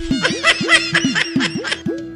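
A burst of high-pitched laughter, a run of short pulses that stops near the end, over background music with a repeating swooping bass riff.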